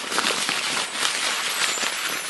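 Logo-intro sound effect: a dense rush of tiny clinks and crackles, like scattering shards, that swells in and holds steady as the logo's fragments fly together.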